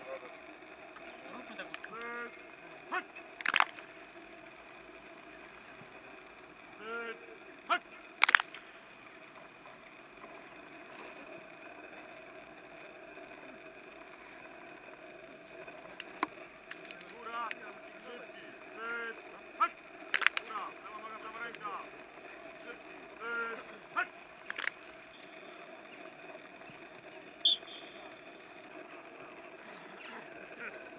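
Training-field sound of an American football practice: short distant shouts from players every few seconds, and now and then a sharp slap or clap, over a steady background hum.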